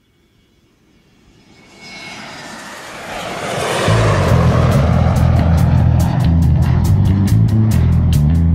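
A jet airplane sound effect swells up out of silence over the first few seconds. About halfway through, a heavy rock band comes in with a low, loud bass and guitar riff, and drum cymbal hits join near the end.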